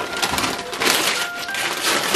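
Gift wrapping paper crinkling and tearing as a present is unwrapped by hand, a dense run of crackling rustles.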